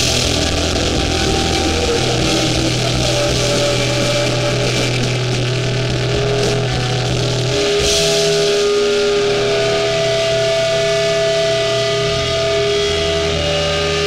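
Hardcore band playing live: heavily distorted electric guitars and bass holding long sustained chords that change every few seconds, with high notes ringing over them.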